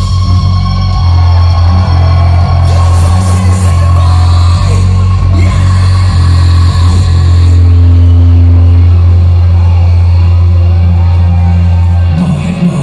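A metalcore band playing loud through a club PA, heard from the crowd: a heavy, steady bass drone with synth, and a male vocalist singing over it.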